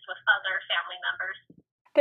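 A woman talking, her voice thin and narrow like a telephone recording. She stops about one and a half seconds in, followed by a short pause.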